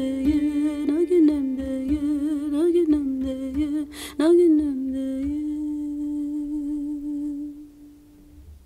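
A solo voice humming a slow, wordless melody with vibrato, with a short click about four seconds in. It ends on a long held note that fades out near the end.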